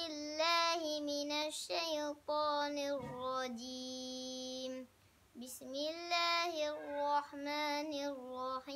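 A young boy chanting Qur'anic recitation in Arabic, in a melodic style with long held notes, pausing briefly for breath about five seconds in.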